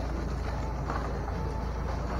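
Steady low rumble of shop room noise, with a couple of faint handling sounds from the candy bins.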